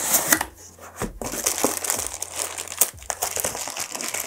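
Clear plastic bag crinkling and rustling around a car amplifier as it is handled and pulled from its cardboard box, with irregular crackles throughout.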